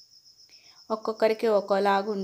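A steady, high-pitched trill runs throughout. For about the first second it is nearly alone; then a voice starts talking over it.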